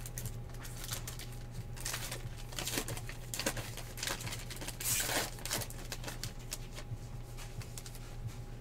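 Paper trading-card pack wrapper crinkling and tearing as it is handled and opened by hand, in irregular crackles, with the loudest rip about five seconds in. A steady low electrical hum runs underneath.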